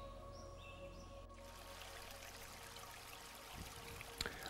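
Very quiet background music of soft, sustained held tones over a low steady hum. The hum drops away shortly before the end.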